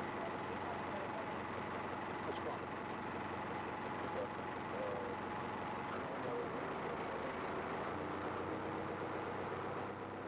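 Bulldozer's diesel engine running steadily, heard from aboard the machine.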